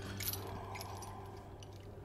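Metal chain rattling and clinking, fading away, over a faint low held note.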